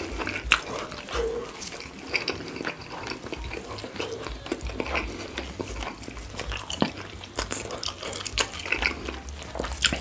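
Close-miked wet chewing and mouth sounds from eating sauce-glazed rotisserie chicken, with sticky squelches from the sauced meat handled in gloved hands; a steady run of small, sharp, wet clicks and crackles.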